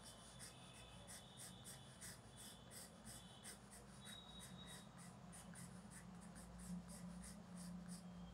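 Faint scratching of a pink coloured pencil on paper, a quick run of short, even strokes as fine lines are sketched.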